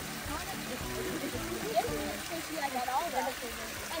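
Faint voices and music over the steady trickle of hot-spring water running down a mineral-crusted rock mound.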